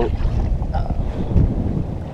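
Wind buffeting the camera's microphone: a steady low rumble over open water.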